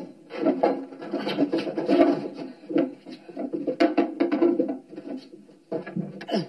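Repeated scraping and grinding as a toilet is worked loose and shifted off its base, in uneven bursts.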